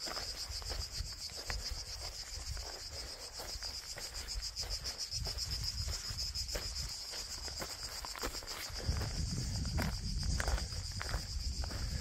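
Insects chirring in a steady, high, rapidly pulsing drone. A low rumble on the microphone grows stronger for the last few seconds.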